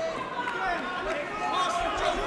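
Crowd of spectators around the fight cage talking and shouting over one another, a steady mix of many voices.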